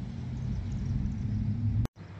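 A steady low hum over faint background noise, cut off suddenly just before the end by a brief gap of silence.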